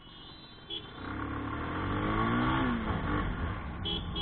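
Bajaj Pulsar 220F's single-cylinder engine accelerating under way: its pitch rises for about two seconds, then falls back, with a steady rush of wind noise on the microphone.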